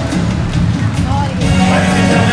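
Live band music playing loudly, with a voice heard over it in the second half.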